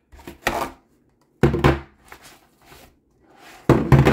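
Airsoft AK magazines being pulled out of a nylon placard's mag pouches and set down on a tabletop: a handful of separate knocks and thunks, the loudest about a second and a half in and just before the end.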